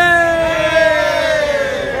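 A group of people shouting one long 'heyyy!' together on a count of three, the pitch sliding slowly down over about two seconds.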